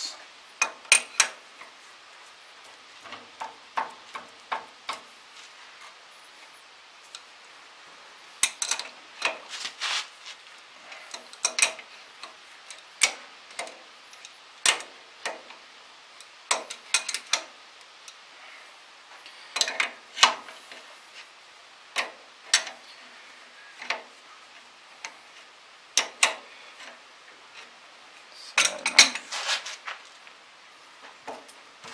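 A wrench working on steel bolts: irregular sharp metal clicks and clinks, singly and in short clusters, as the two bolts holding a planter's fertilizer hopper are undone.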